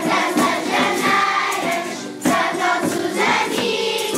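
A group of young children singing Janeiras, traditional Portuguese New Year carols, together as a choir, with a short break between lines about two seconds in.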